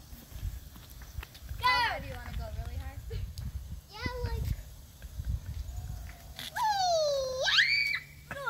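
Children's high-pitched wordless calls and squeals: a falling squeal about one and a half seconds in, a shorter one around four seconds, and a long call near the end that dips and then leaps up into a shriek.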